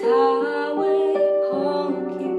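A young girl singing a slow song solo over a piano accompaniment, holding long notes.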